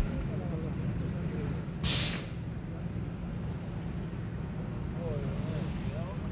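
Outdoor shoreline ambience: a steady low rumble with faint distant voices. A short hiss comes about two seconds in and fades quickly.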